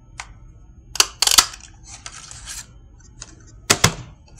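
Hand-held oval paper punch snapping through cardstock to cut out a stamped sentiment: a sharp clack about a second in with a second, louder clack just after, then another pair of quick clicks near the end.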